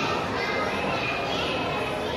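A young child's high voice speaking into a microphone over a hall's PA, reciting in Tamil, typical of a Thirukkural couplet recitation. It carries over a steady background hum of the hall.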